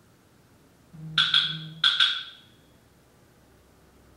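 Wood-block strikes: four sharp knocks in two quick pairs, the pairs about two-thirds of a second apart, each with a short ringing tail, over a low hum that stops with them.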